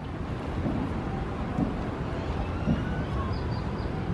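Steady low outdoor rumble with faint bird calls over it: thin whistled notes through the middle, and a few short high calls near the end.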